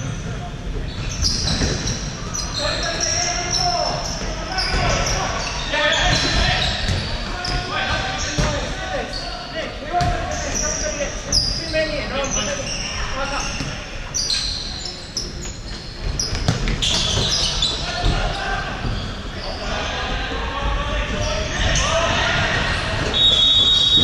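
Futsal play on a wooden indoor court: the ball being kicked and bouncing off the floor, shoes squeaking, and players calling out, all echoing in a large hall.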